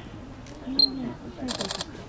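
A camera sounds: a short high beep about a second in, then a quick run of shutter clicks lasting a fraction of a second, over faint background talk.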